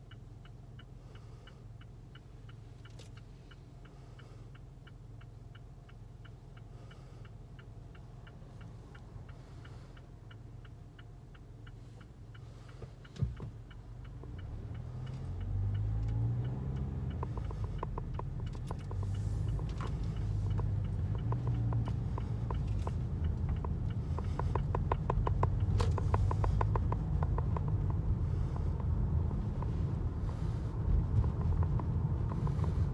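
Car's turn-signal indicator ticking steadily in the cabin while the car sits stopped, with a sharp knock about 13 seconds in. The engine and tyre rumble then grow louder as the car pulls away, and the ticking comes back through the turn.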